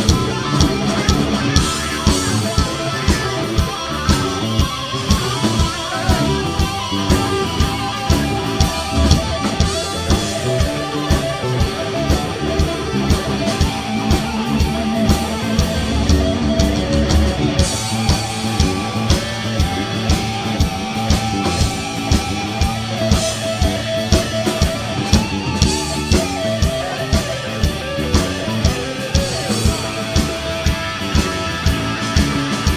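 Live rock band playing an instrumental passage: electric guitars over bass guitar and a drum kit keeping a steady beat.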